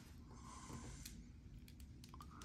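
Very faint, with a few light clicks of plastic from a 6-inch action figure and its blade accessory being handled and posed.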